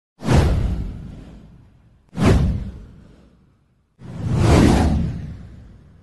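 Three whoosh sound effects for an animated title card, each spread from a deep low end to a high hiss and fading out over about a second and a half. The first two come in suddenly. The third swells in more gently after a short gap.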